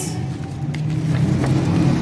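Steady low background rumble, with paper ballot sheets rustling faintly as they are handled.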